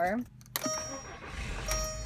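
A Volkswagen Beetle's ignition key turned with a click, a dashboard chime sounding, and the engine cranking and catching about a second and a half in, settling into a low idle rumble.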